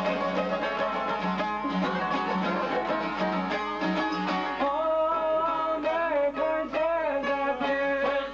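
Albanian folk music on çiftelis, long-necked two-string lutes, played in a fast plucked melody. About halfway through, a man's voice comes in singing over them in a wavering, ornamented line.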